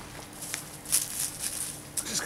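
A hand scraping and brushing dry mulch on garden soil: a run of short rustles and crackles, loudest about a second in.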